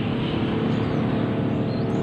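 Suzuki RC two-stroke single-cylinder engine idling steadily. The engine's oil pump is feeding far too much two-stroke oil.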